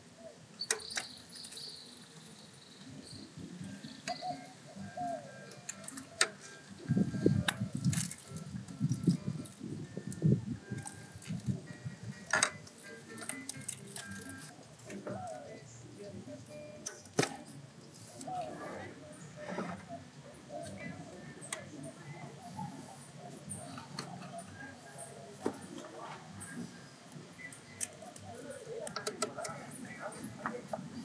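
Plastic electrical connectors being unclipped by hand from ignition coils and sensors on a V6 engine, giving scattered sharp clicks and light rattles from the wiring harness. A stretch of louder handling noise comes about a third of the way in.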